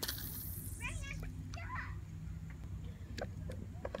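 Faint, short bursts of distant voices over a low steady hum.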